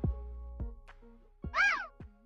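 The end of the song's music, a few soft notes dying away, then a single cat meow about one and a half seconds in, rising and falling in pitch and louder than the music.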